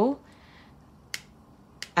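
Two short, sharp clicks about two-thirds of a second apart over quiet room tone.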